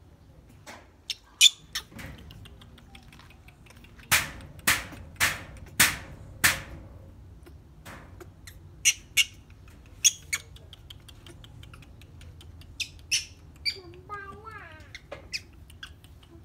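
Baby monkey giving short, sharp, high squeaks in scattered bursts, with a run of five louder ones about half a second apart some four seconds in.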